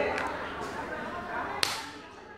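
A single sharp click about one and a half seconds in, over faint background noise.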